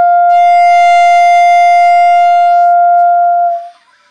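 A 1940s Evette Schaeffer wooden clarinet holding one long, steady high note, which stops about three and a half seconds in.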